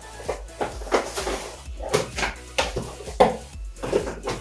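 Cardboard packaging being handled: irregular rustles, scrapes and light knocks as a small accessory box is rummaged through and its contents lifted out, with one sharper knock about three seconds in.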